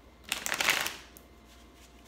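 A deck of tarot cards being shuffled: a quick riffle of rapid card flicks lasting under a second, starting a moment in and fading out.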